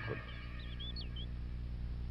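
Faint bird call: a short run of quick, gliding chirped notes, over a steady low hum of background ambience.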